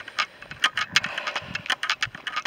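Footsteps on a gravel path: a quick, irregular run of sharp little clicks and crunches, several a second, with a few soft low thumps.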